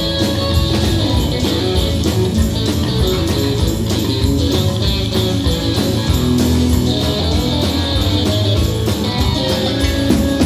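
Live rock band playing a song: electric and acoustic guitars over electric bass and a drum kit, with a steady beat throughout.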